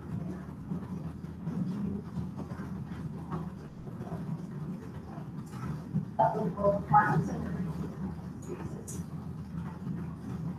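Stationary bicycle on an indoor trainer turning steadily as it is pedalled, a low continuous rumble, with faint voices and a brief louder burst of voice about six seconds in.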